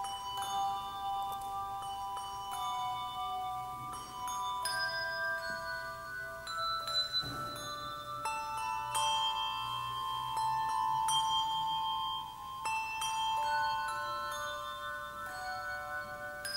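A handbell ensemble playing a piece of music: struck handbells sounding in chords and melody lines, each note ringing on and overlapping the next, with new notes entering every second or so.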